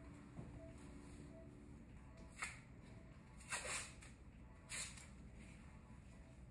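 Adhesive medical tape being pulled and torn while an epidural catheter is taped down along the back: three short ripping sounds about two and a half, three and a half and nearly five seconds in, the middle one the longest.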